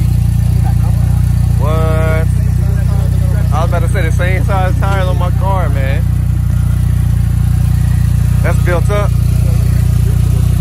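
Chevy Ecotec four-cylinder engine idling steadily in an open tube-frame car, a low, even hum from its short side-exit muffler, with voices chatting over it.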